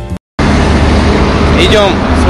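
The end of a piano tune cuts to silence for a moment, then to loud, steady city road traffic noise, a low rumble under a hiss. A voice starts near the end.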